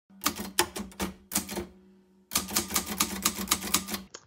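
Typewriter keys striking in quick succession: a run of keystrokes, a short pause just before halfway, then a faster, denser run of keystrokes.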